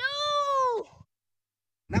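A child's high voice calls out one long drawn-out syllable that rises and then falls in pitch, ending about a second in. The sound then cuts off to dead silence, and a man starts speaking near the end.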